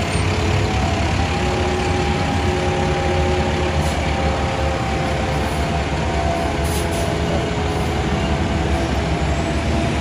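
Diesel engines of Cal Fire wildland fire engines running as the trucks roll past close by: a loud, steady low rumble with a faint steady whine above it.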